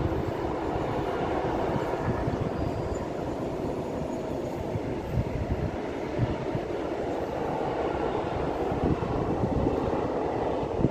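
Freight train of tank wagons rolling past: a steady rumble of steel wheels on the rails, with occasional louder knocks.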